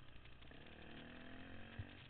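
Trail motorcycle engine running, its pitch climbing gently as the throttle opens, with a short low thump near the end.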